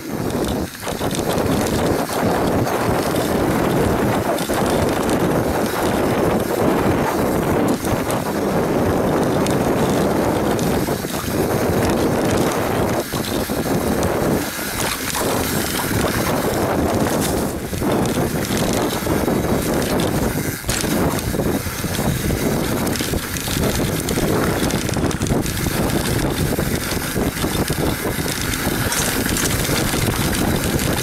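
Wind buffeting the microphone over the rumble of a YT Capra enduro mountain bike's tyres on a dry dirt trail, with frequent irregular knocks and rattles as the bike hits bumps at speed.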